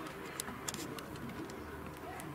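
A pigeon cooing over the faint open-air background of the pitch, with a couple of light clicks in the first second.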